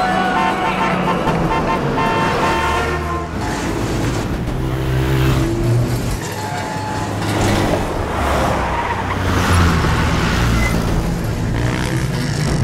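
A vehicle engine running with street traffic noise, mixed as a film soundtrack. Held music notes carry over and fade out within the first three seconds.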